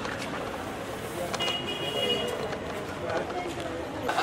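Indistinct voices over steady street and traffic noise, with a brief high steady tone about a second and a half in.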